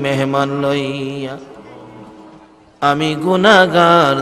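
A man's voice intoning a prayer of supplication (dua) as a drawn-out melodic chant. One long held note for the first second and a half fades away, and the chant comes back with a wavering pitch near three seconds in.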